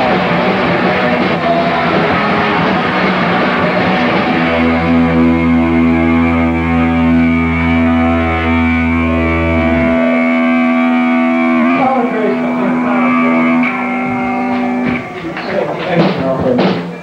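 A hardcore punk band playing live at full volume for about four seconds, then holding a ringing chord over a sustained bass note. The bass stops about ten seconds in, and the guitar rings on a few seconds longer before dying away near the end, as the song ends.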